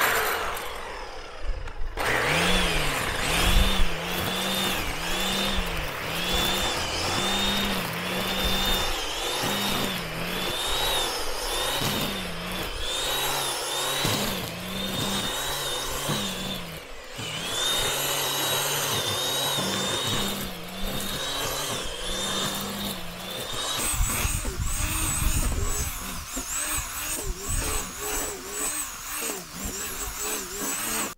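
Corded electric string trimmer with a homemade nut-clamped head and thick nylon line running and cutting grass, its motor whine rising and dipping in pitch as the line bites into the grass. From about 24 seconds in the whine gives way to a rougher, more uneven noise.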